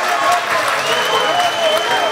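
Spectators clapping and cheering a goal, with shouting voices among them. A long, steady whistle note sounds from about a second in.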